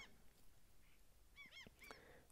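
Near silence with faint, distant bird calls: a quick run of three or four short, rising-and-falling calls about one and a half seconds in.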